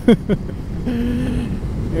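Wind rush and motorcycle engine at about 100 km/h, picked up by a lavalier mic on the rider's helmet, a steady low rumble. A short laugh comes right at the start, and a brief steady hum-like tone sounds in the middle.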